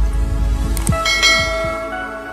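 Animated logo intro sound effects: quick falling swoops and clicks, then a bell-like chime about a second in that rings on and slowly fades.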